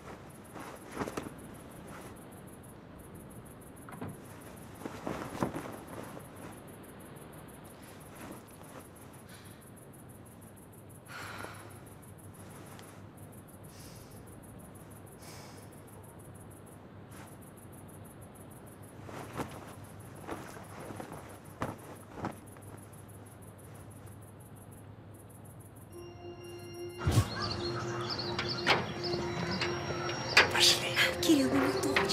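Hushed room with a few soft knocks and thuds scattered through it. Near the end, film music comes in suddenly and much louder.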